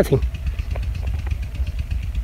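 Low, unsteady rumble of wind buffeting the microphone.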